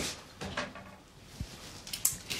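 Refrigerator door opened and things inside handled: a few short knocks and bumps, the first right at the start and a low thump about a second and a half in.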